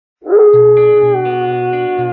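Wolf howl: one long call that rises quickly, then holds and slowly falls in pitch. Music enters beneath it about half a second in.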